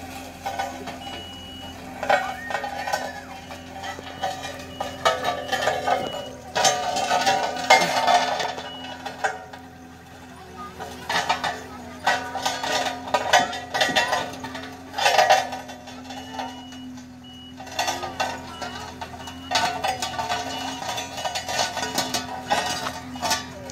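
Small tandem steel-drum road roller's diesel engine running steadily as it drives, with its reversing alarm beeping in short runs for the first few seconds and again near the end. People's voices chatter loudly over the engine.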